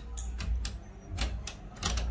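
Haier microwave oven with its cover off, switched on and running with a low hum, while its mechanical timer knob is turned with about half a dozen sharp clicks.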